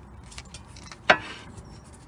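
A single sharp metallic clink about a second in, with a short ring, from the front brake caliper and disc being handled, among faint rubbing and handling noises.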